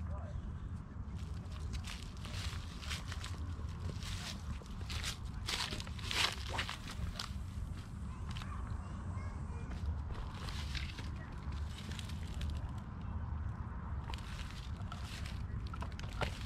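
Footsteps crunching and shuffling over dry fallen leaves and loose stones, a run of irregular short crackles, under a steady low rumble.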